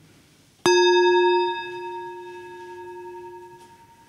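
A small handheld Tibetan singing bowl struck once with a wooden striker. It gives a clear low ring with several higher overtones that fades away over about three seconds.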